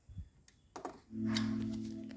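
A couple of low knocks, then about a second in music starts from the homemade 100 W Bluetooth speaker: a sustained low synth-like note held steadily.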